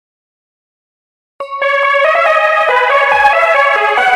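Silence for about a second and a half, then background music starts suddenly: a melody of stepping keyboard notes with a low falling sweep a couple of seconds in.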